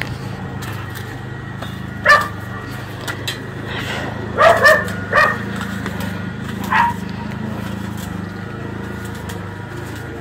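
Dogs barking, a few short single barks spread over several seconds, over a steady low hum.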